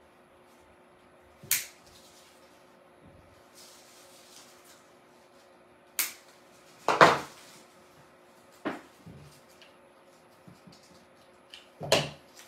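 Artificial flower and greenery stems being handled: soft rustling of plastic leaves and stems, with about five sharp knocks and clicks against the table, the loudest a quick cluster about seven seconds in.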